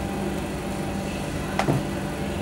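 Steady low machinery hum with a fixed low tone, with one short sound about one and a half seconds in.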